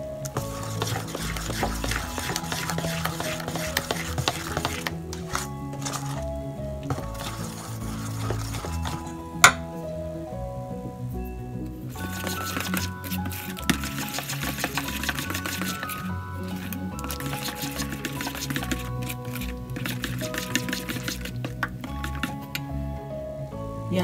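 Background music with a stepped melody, over a metal spoon stirring thick dal batter in a stainless steel bowl with a wet scraping, slopping sound. One sharp clink about nine and a half seconds in.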